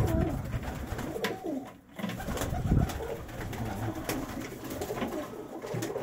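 Viennese domestic pigeons cooing in a small loft, in low, short calls, with a few short clicks among them. The cocks are cooing and squabbling because two males have just been let in with the others.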